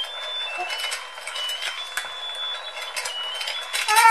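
Battery-powered musical fishing game toy running: a simple high electronic tune of single beeped notes from its small speaker, over the quick plastic clicking of its turning mechanism.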